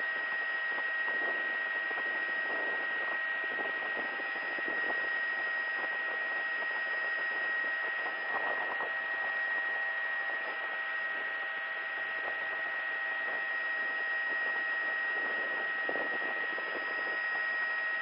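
Steady hiss carrying a constant high whine: an aircraft's cabin noise heard through the crew's intercom line.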